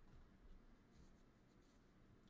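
Near silence with faint, brief scratches of a stylus on a graphics tablet about a second in.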